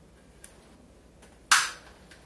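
Chopsticks knocking once, sharply, against the rim of an earthenware clay pot while picking out pieces of braised pork, with a brief ring dying away after. A faint tick comes about a second before it.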